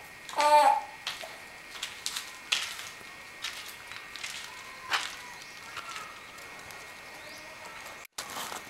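A short vocal sound from a person about half a second in, then scattered light knocks and clicks over a steady hiss.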